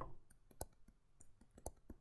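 Faint clicks and taps of a stylus on a writing tablet during handwriting: one sharper click at the start, another about half a second in, then a few fainter ticks.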